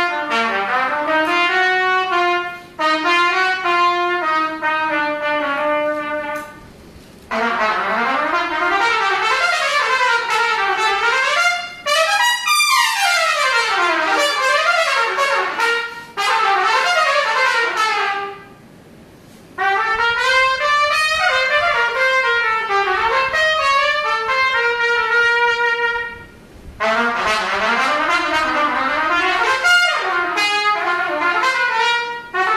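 A trumpet playing alone: fast runs and arpeggios sweeping up and down, in four phrases broken by short pauses for breath, with one run climbing very high about twelve seconds in.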